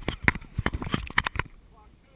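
A quick, irregular run of sharp knocks and scuffs, close and loud for about a second and a half, then dying away: the GoPro being handled and moved about on the rock.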